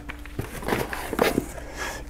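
Tools and paper packing being put back into a cardboard shipping box: rustling with several small knocks and clicks.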